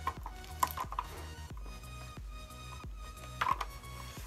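Background music, with scattered plastic clicks and knocks as a football helmet is pulled on and its chin strap is fastened.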